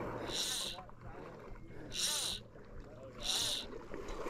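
Fly reel drag buzzing in four short bursts, each about half a second long, as a hooked trout runs and pulls line off the reel.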